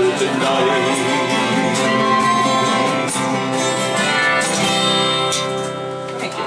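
Acoustic guitar strummed live, playing the closing bars of a song, with the sound dipping near the end.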